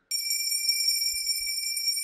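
Altar bells shaken continuously as the priest elevates the chalice at the consecration, signalling the elevation to the congregation. A bright, high jingling ring that starts suddenly just after the start and keeps going.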